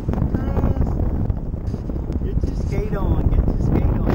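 Wind buffeting the microphone with a heavy, uneven rumble, broken twice by short, indistinct voice sounds: once about half a second in, and again around three seconds in.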